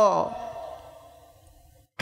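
A man's long drawn-out word ending on a falling pitch, its echo and faint hall ambience dying away over about a second and a half, then a brief moment of dead silence near the end.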